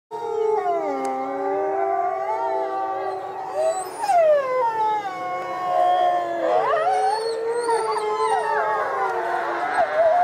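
A chorus of many wolves howling together: long, overlapping howls that slide up and down in pitch, with more voices joining about six and a half seconds in.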